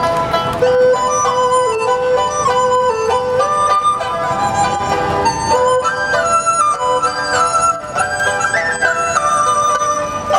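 Chinese sizhu chamber ensemble playing a folk-style tune on dizi bamboo flute, erhu, pipa, guzheng and yangqin, the flute prominent in a stepping melody.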